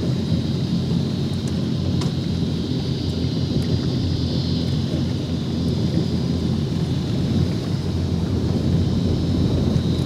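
Yamaha 242 Limited jet boat's engines idling: a steady low rumble with a faint steady high whine over it.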